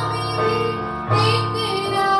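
A woman singing a Hindi worship song, accompanied by an electronic keyboard holding sustained chords and bass notes; a new sung phrase and bass note begin about a second in.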